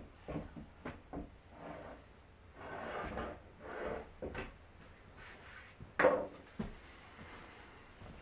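Hand tools and parts being handled in an engine bay: scattered sharp clicks and knocks with rubbing and scraping between them, the loudest knock about six seconds in.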